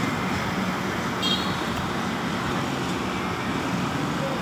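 Steady road traffic noise, with a brief high-pitched tone about a second in.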